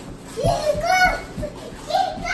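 A young child's voice calling out without clear words, over a few dull thumps.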